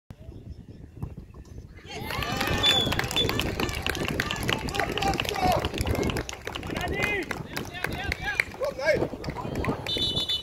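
Many voices of players and onlookers at a football pitch talking and calling out over one another, starting about two seconds in.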